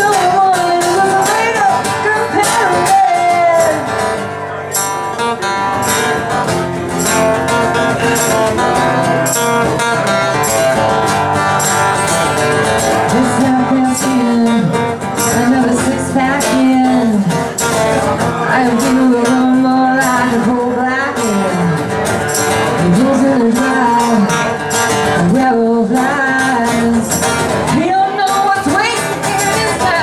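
Live country song played by a guitar-and-keyboard duo, with a woman singing and a tambourine keeping time, all through the hall's PA.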